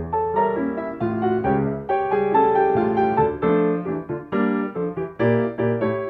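Piano music: a tune of short, struck chords at a steady beat, about two to three a second, each note starting sharply and fading.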